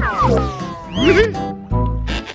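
Cartoon background music with a falling whistle-like sound effect at the start, then a brief rising-and-falling vocal sound from a character about a second in.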